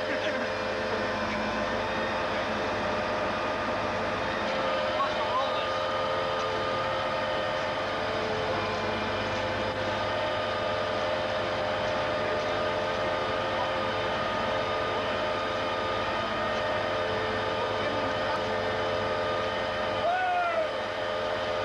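Heavy diesel logging truck running steadily with a constant whine, with faint voices in the background.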